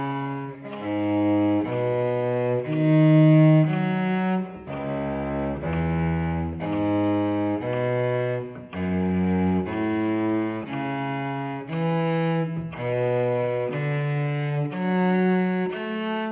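Solo cello bowing minor seventh arpeggios (root, minor third, fifth, minor seventh) at a slow practice tempo. The notes change about twice a second, with a short break in the sound about every two seconds.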